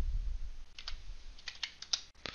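Several short taps on a computer keyboard, typing a dimension value into CAD software, with a low rumble near the start.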